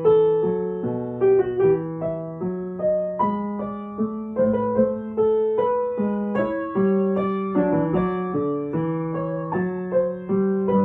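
Upright piano sight-read at a slow walking pace in A minor: a right-hand melody over a steady stream of left-hand quavers, with a regular pulse of note attacks.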